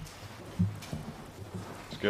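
Several soft, low thumps and knocks spread through a quiet room, the strongest about half a second in, with no speech.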